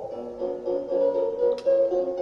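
A short phrase of instrumental music: several held notes in a row, changing pitch a few times a second.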